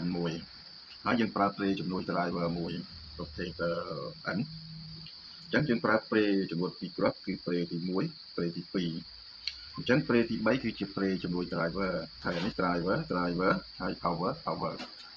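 A person talking in short phrases, over a steady high-pitched whine.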